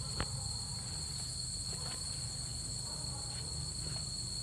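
Steady chorus of insects: one unbroken high-pitched note with a hiss above it. A single sharp click sounds shortly after the start.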